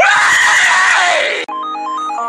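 A man's loud, strained scream lasting about a second and a half, dropping in pitch near the end and cut off abruptly. The song's keyboard music then comes back in.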